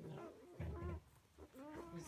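Newborn Labrador puppies whimpering and squeaking while they nurse: two short, faint calls with a wavering pitch.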